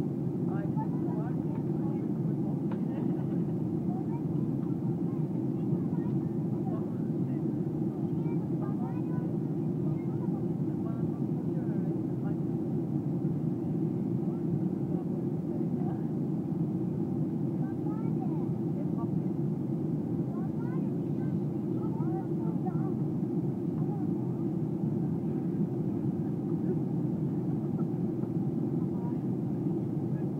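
Steady drone inside the cabin of a Boeing 737 airliner on descent: engine and airflow noise at an even level, with faint passenger chatter in the background.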